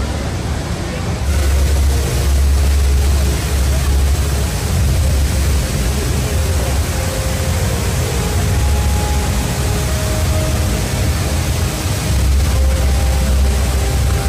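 Steady rush of the Rain Vortex, the indoor waterfall pouring from the dome's oculus into its pool, with a deep rumble that swells about a second in and again near the end. A crowd murmurs underneath.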